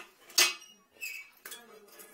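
A few light clinks and knocks of hard tools being handled: one sharper knock about half a second in, then smaller clicks.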